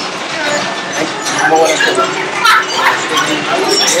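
A short, rasping "little rippy sound" from the plastic parts of an R-series astromech droid kit as a part is pushed into place on the body, heard over background voices.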